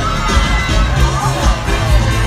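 Parade crowd shouting and cheering close by over loud float music with a steady bass beat.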